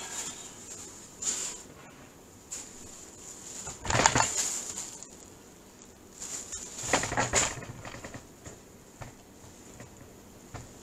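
Crinkling and rustling of a thin plastic glove being pulled on and handled over a nitrile glove, in a few short bursts, the loudest about four seconds in and another around seven seconds.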